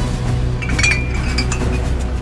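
Glass bottles clinking against each other in a crate, a few light knocks with short ringing about a second in, over music with a deep steady bass drone.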